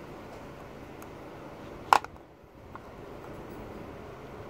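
A single sharp click about two seconds in, as a flathead screwdriver works at the oil filter housing cap to prise out the old O-ring, over a steady low background hiss.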